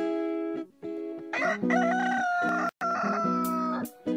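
Strummed guitar chords of a TV show's opening jingle, with a rooster crowing loudly over them from about a second and a half in, its last note held for about two seconds.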